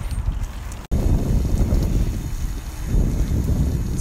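Wind buffeting a phone's microphone outdoors, a loud, steady low rumble, broken by a split-second dropout about a second in.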